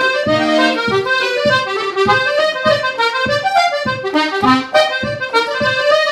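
G/Ab two-row Manfrini button accordion playing a brisk reel: a running melody of quick notes over left-hand bass and chord buttons sounding about twice a second.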